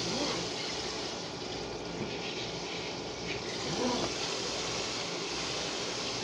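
Kitchen tap running steadily into a sink, a continuous rush of water.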